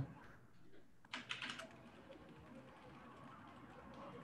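A short quick run of computer keyboard key clicks about a second in, over faint room tone.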